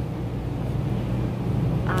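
Steady low hum with an even background hiss and no distinct events.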